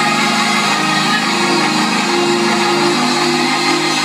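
Organ holding steady chords under a continuous wash of crowd noise from the congregation.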